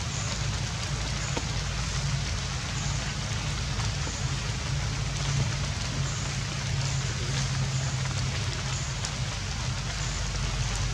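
Steady rain falling, an even hiss without pauses, over a constant low hum.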